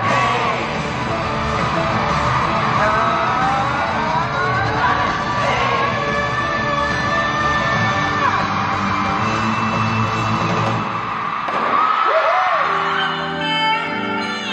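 Live pop concert music played loud in a large hall, with a voice holding long, wavering notes over the band and yells riding over it. About twelve seconds in the music changes to a sparser passage of steady tones.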